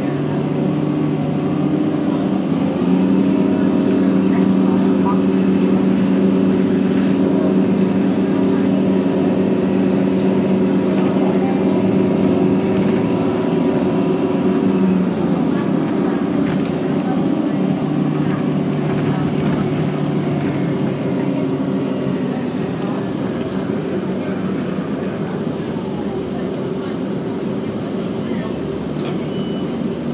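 Inside a 2009 Orion VII NG Hybrid transit bus under way: its diesel-electric hybrid drivetrain runs with a steady drone, along with road and cabin noise. The sound grows louder a few seconds in and eases off near the end as the bus slows.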